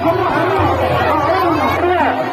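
Several people talking at once in the same space, a busy chatter of overlapping voices.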